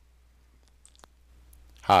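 A single sharp computer mouse click about a second in, starting playback, with a couple of fainter ticks just before it.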